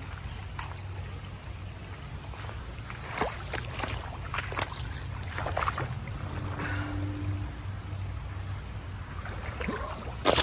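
Footsteps crunching through twigs and brush on a creek bank, in scattered short crackles over a steady low hum.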